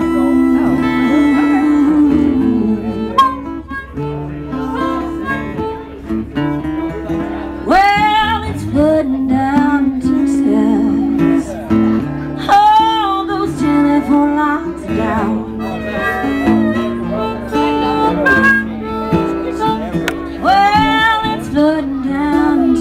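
Live acoustic blues: an acoustic guitar playing under a lead line that bends sharply up and down in pitch, three times over.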